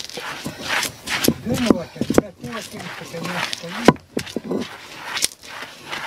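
A heavy hand stone rocked over a stone grinding slab (batán), crushing dried sprouted corn: gritty stone-on-stone grinding with sharp knocks now and then, the loudest about a second in and just before four seconds.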